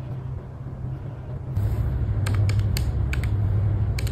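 Calculator keys being pressed: a quick run of about five sharp plastic clicks a little past halfway, over a steady low hum.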